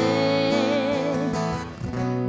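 A woman's voice holding the last sung note of a line with a wavering vibrato over a strummed acoustic guitar; the note fades out a little over a second in, leaving the guitar chords to ring on.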